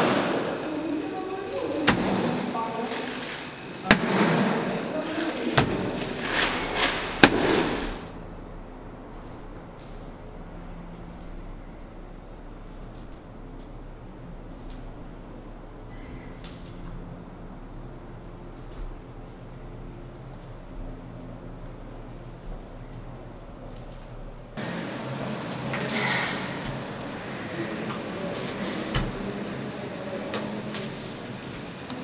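Wet clay being worked by hand: sharp smacks and thuds over indistinct voices. About eight seconds in it drops to a quiet stretch with a low steady hum, and handling sounds return near the end.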